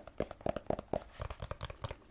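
Fingers tapping on the cover of a red hardcover journal, a quick, uneven run of light taps.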